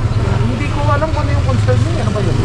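Several people talking in the background on a street, over a steady low rumble of vehicle engines.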